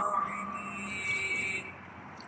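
Soundtrack of a man chanting an Arabic dua (supplication): the last held note of a phrase trails off in the first half second, leaving a soft, echoing backing that drops lower about two-thirds of the way through.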